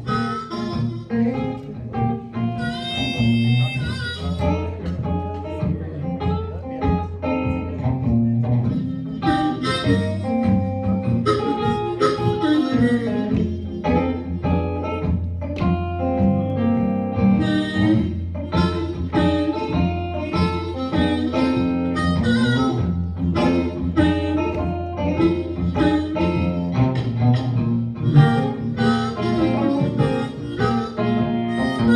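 Blues harmonica played into a vocal microphone over a picked electric guitar, an instrumental passage in the key of F, with long held, reedy harmonica notes among the guitar's plucked lines.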